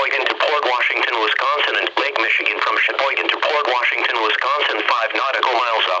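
Speech over a weather radio's small speaker: the National Weather Service broadcast voice reading a special marine warning for a passing severe thunderstorm, with little bass.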